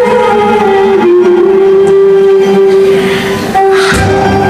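Female vocalist holding one long, steady note over an Arabic music ensemble.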